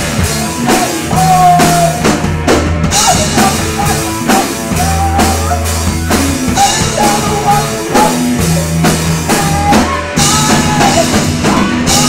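Rock band playing live at full volume: drum kit keeping a steady beat under electric guitars and bass.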